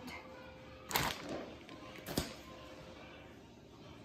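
Quiet handling at a table while shredded cheese is sprinkled onto a split baked potato: a brief rustle about a second in and a single light knock about a second later.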